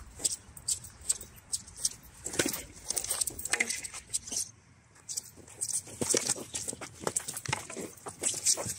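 Quick, irregular clicks and scuffs of two padded fighters sparring with a wooden stick and a shield: footsteps on the running track and light knocks. There is a brief lull just before halfway.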